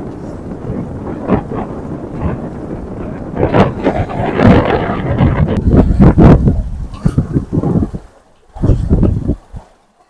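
Wind buffeting the microphone in gusts over the rush of water along the hull and wake of a Montgomery 17 sailboat under sail. The sound dips sharply about eight seconds in, comes back briefly, then fades.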